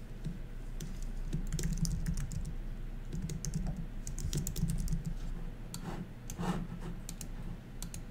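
Typing on a computer keyboard: runs of quick key clicks in short bursts, over a low steady hum.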